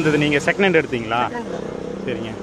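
A man talking, with a faint steady low hum underneath.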